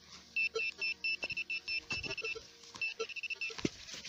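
Handheld metal-detecting pinpointer beeping in rapid bursts of short, high beeps, about six a second, as it is probed through the soil of a hole: it is signalling buried metal, which the detectorist thinks may be cartridge cases. Soft scrapes of soil and dry grass come in between the beeps.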